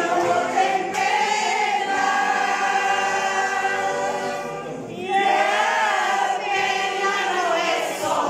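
A senior amateur choir singing together, many voices holding long notes, with a short break about five seconds in before the next phrase.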